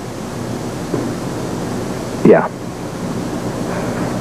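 Steady background hiss under a pause in the dialogue, broken by a single short spoken "Yeah" a little past two seconds in.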